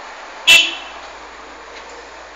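A single short, loud, high-pitched toot or beep about half a second in, fading quickly, over a steady background noise.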